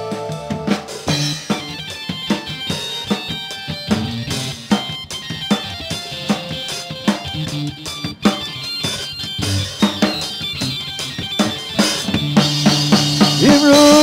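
Live band playing an instrumental break in an upbeat song: a drum kit keeps a steady beat under a melody line. Singing comes back in near the end.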